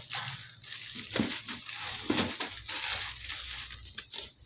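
A cardboard box being rummaged through by hand as tackle is pulled out of it: a string of irregular crackles, crunches and scrapes.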